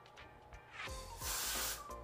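Aerosol hair spray (Got2b Glued freeze spray) sprayed onto slicked-back hair: one short hiss a little over a second in, over quiet background music.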